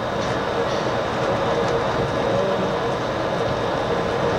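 Walt Disney World resort monorail running along its concrete beamway, heard inside the front cab: a steady running noise with a faint steady whine.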